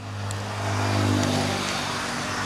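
A motor vehicle passing on the road: a low engine hum with tyre noise that swells to its loudest about a second in and then fades.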